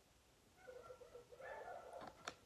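Faint high-pitched whimpering that wavers in pitch, starting about half a second in.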